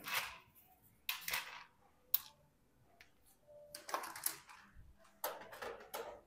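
Scattered light clicks, taps and rustles of derailleur cable housing pieces, ferrules and small tools being handled on a workbench, with one sharper click about two seconds in.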